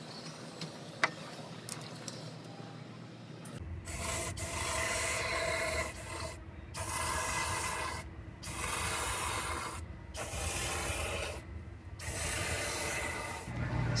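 Cavity wax sprayed through a compressed-air 360-degree wand into the body cavities: after a few quiet seconds, five hissing spray bursts of one to two and a half seconds each, with short pauses between them.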